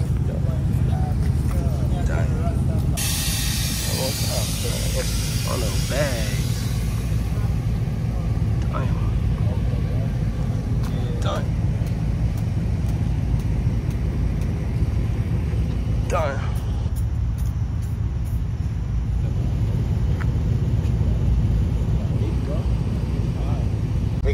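A car engine idling with a steady low rumble, and people talking in the background. About three seconds in a rush of hiss starts and fades out over the next few seconds.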